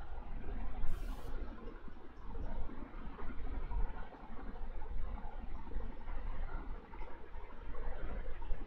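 Low, uneven background noise with a deep rumble and no speech, and a brief high hiss about a second in.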